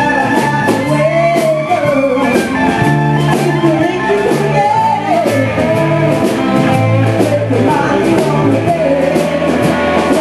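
A live blues-rock band plays with electric guitar, bass guitar and drums. Over it a melody line slides and wavers, against a steady drum beat.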